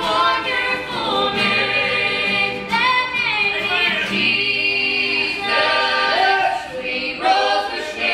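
A man and two women singing a gospel song in harmony into microphones.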